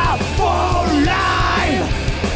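Heavy rock band playing live and loud, with distorted guitars, bass and drums, and a yelled vocal line bending in pitch over them.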